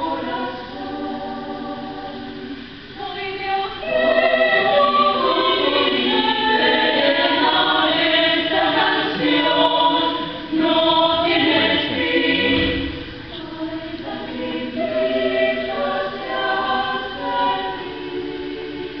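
Women's choir singing in several parts, growing louder about four seconds in and softer again in the last few seconds.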